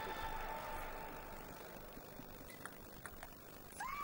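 Quiet background with a few faint, sharp clicks of a celluloid table tennis ball striking bats and table in a short rally, a little past halfway through.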